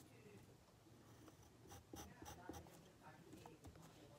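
Faint pencil scratching on paper in short, scattered strokes.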